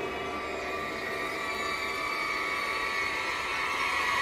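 Horror background-score drone: several held high tones layered together, swelling slowly louder.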